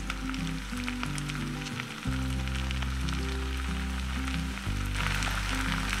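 Potato and onion slices frying gently in butter in a pan on low heat, a soft sizzle of fine crackles, heard under background music with steady low notes.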